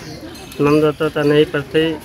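A man's voice speaking into a handheld microphone, starting after a short pause.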